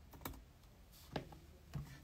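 A few faint clicks of computer keys, the clearest just past a second in.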